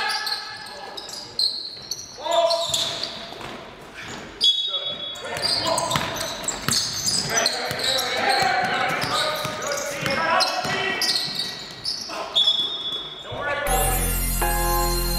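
Basketball practice in a large, echoing gym: players and coaches calling out over basketballs bouncing on the court and repeated short knocks. Music comes in just before the end.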